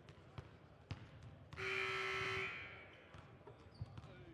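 Basketballs bouncing on a gym floor during warm-ups, a scatter of single knocks. Midway, a loud buzzer-like tone sounds for about a second, and its echo dies away in the hall.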